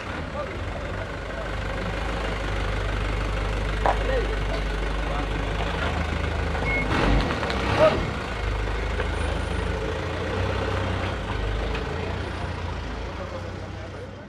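Engine of a van with a roof beacon running at low speed, a steady low rumble. Faint voices of people can be heard in the background.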